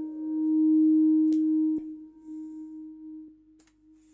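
Yamaha CS20M monophonic analog synthesizer holding one low, almost pure tone that swells, then fades away over the last two seconds. A few faint clicks sound over it.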